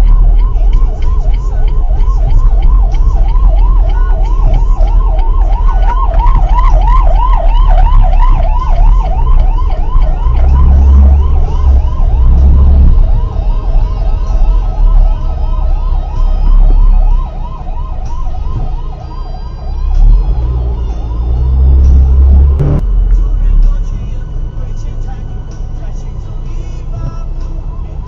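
Ambulance siren in a rapid rising-and-falling yelp. It is loud at first, fades from about two-thirds of the way through and is gone near the end, over a low road and engine rumble.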